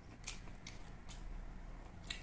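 Close-miked eating: a man chewing and biting grilled chicken, heard as a few short crisp clicks in the first half. A faint steady low hum runs underneath.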